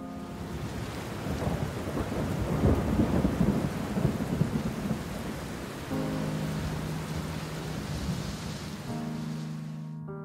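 Steady heavy rain with a rumble of thunder that swells a second or two in and fades by about five seconds in.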